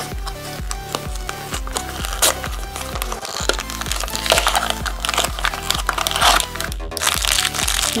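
Background music with a steady beat, with packaging crinkling as a small cardboard blind box is opened and its foil pouch handled, most noticeably in the middle of the stretch.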